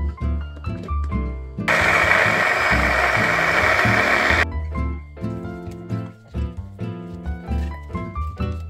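Electric mini food chopper running in one burst of about three seconds, starting near two seconds in and stopping suddenly, chopping celery and mixed vegetables fine. Background music with plucked notes plays throughout.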